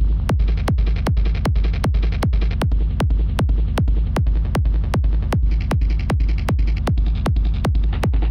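Distorted hardstyle gated kick drum looping at about two and a half hits a second, each hit a punch that drops in pitch, over a continuous low rumble between hits. It runs through Guitar Rig amp-simulator presets, so the distortion's tone changes partway through as the presets are switched.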